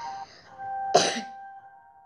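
A child's single short cough about a second in, over soft background music with held chime-like tones.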